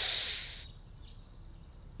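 A person giving a short hiss, in imitation of an animal, lasting about two-thirds of a second before it fades out.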